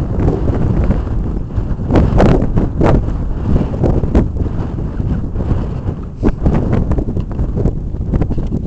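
Wind buffeting the microphone in a loud, steady rumble, with irregular footsteps knocking on a concrete paver path as the walker goes downhill.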